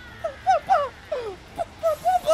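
A high-pitched voice calling out a few short syllables in quick succession, each falling in pitch, without clear words.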